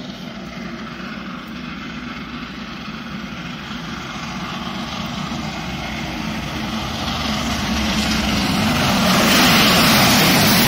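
LMS Jubilee class three-cylinder 4-6-0 steam locomotive 45596 Bahamas approaching at speed under steam with its train. The sound of its exhaust and running gear grows steadily louder and is loudest near the end as it reaches the platform.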